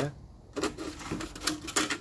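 A few light clicks and taps of a disposable plate being handled and set onto a round plastic bucket pot.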